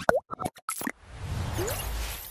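Animated logo sting sound effects: a quick run of pops and blips, one gliding down in pitch, then a whoosh that swells up from about a second in.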